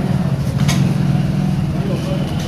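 A steady low engine-like hum with a faint tick a little after half a second in.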